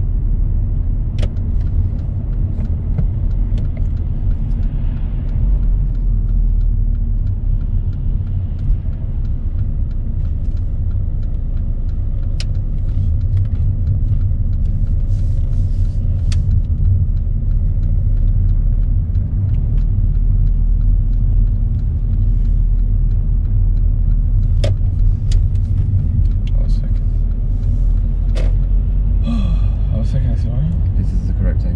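Steady low rumble of engine and road noise heard from inside a moving car's cabin, with a few faint clicks scattered through it.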